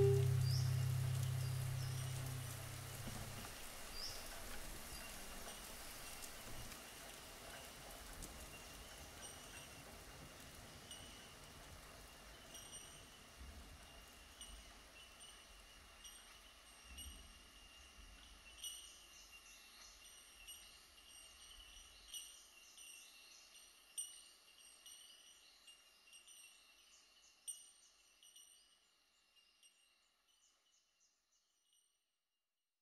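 The last low notes of a track ring out and end within the first few seconds. What remains is a faint recording of light rain with scattered bird chirps and a few sharp drip-like ticks, fading out near the end.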